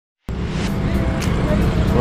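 Road traffic noise: a steady low rumble of cars and motor scooters passing on a busy street, cutting in abruptly about a quarter second in, with some background music mixed in.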